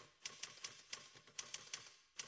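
Faint manual typewriter keys striking in an irregular patter, about five or six keystrokes a second.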